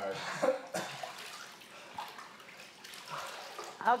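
Pool water lapping and splashing softly as people shift about in it, with a brief laugh near the end.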